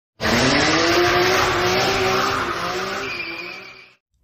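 Race car sound effect: an engine drone with tyres screeching, starting loud and fading out toward the end.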